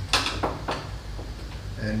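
A door being unlocked and opened: three sharp latch and lock clacks in the first second.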